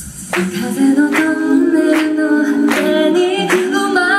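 Live all-female a cappella group singing held close-harmony chords in several parts, with no instruments, over a steady beat of sharp hits.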